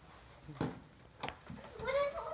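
A few short rustles and knocks from a cardboard gift box and its wrapping as it is opened. Near the end, a person's drawn-out vocal sound begins, rising in pitch.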